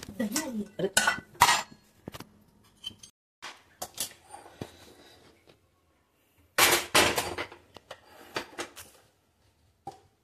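A metal pressure cooker being handled on a gas stove: a run of knocks and clinks of metal on metal, with a longer scraping clatter about seven seconds in.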